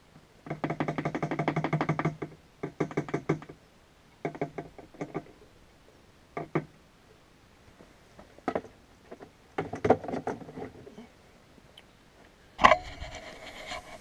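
Fuel glugging through a jiggle-siphon hose into a Kubota B7000 tractor's fuel tank as the tank fills, in intermittent bursts of rapid rattling gurgles. There is a louder thump near the end.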